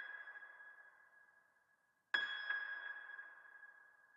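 Software piano from a Korg Triton plugin playing a sparse, high top-line melody. A held note fades away, then a new note is struck about two seconds in and slowly decays.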